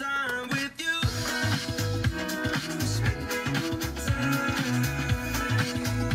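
Music with a steady bass line and beat playing through a car's cabin speakers, streamed over Bluetooth from a Carpuride W903 portable head unit as an audio-quality test.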